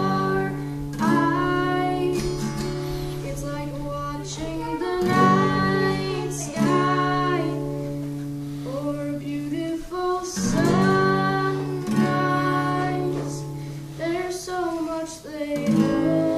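A boy singing while playing chords on an acoustic guitar, the chords changing about every five seconds under his sung phrases.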